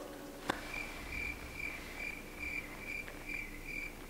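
Cricket chirping sound effect marking an awkward, puzzled silence: short chirps at one steady high pitch, a little over two a second, starting about a second in. A faint click comes about half a second in.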